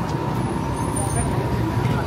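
Busy city street ambience: a steady low rumble of traffic with passers-by talking in the crowd.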